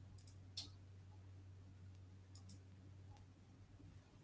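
Faint computer mouse clicks: three in the first second and a quick pair about two and a half seconds in, as a video is started on the presenter's computer.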